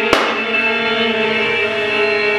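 Violin playing a long held bowed note with strong, steady overtones. A single sharp click cuts in just after the start.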